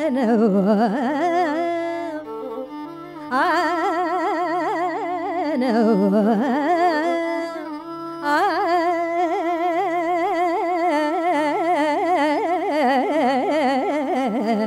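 Female Carnatic vocalist singing long, heavily ornamented phrases with constant oscillating slides in pitch, a violin following her, over a plucked tambura drone and without percussion. The phrases break briefly about three and eight seconds in.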